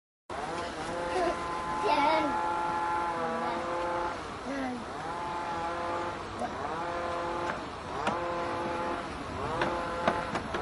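A person's voice making long, drawn-out tones, over and over. Each tone bends up at the start and is then held for about a second, and they come every second or two.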